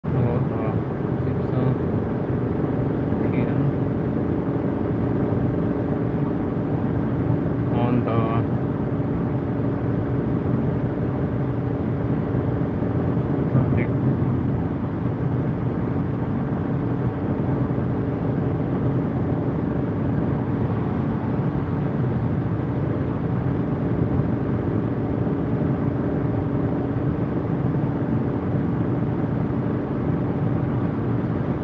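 Steady road and engine noise inside a car cruising on a motorway, with a constant low hum running under the tyre rumble.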